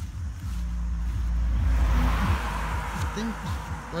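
A vehicle passing on the road: its tyre and road noise swells to a peak about two seconds in and then fades, over a low rumble on the phone's microphone.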